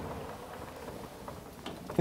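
Vertical sliding whiteboard panels being pushed up by hand and rolling along their track, a steady low rumble, with a short knock near the end.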